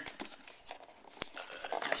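Hands handling and turning over a cardboard retail box: light rubbing and scraping with small clicks, and one sharp tap a little past a second in.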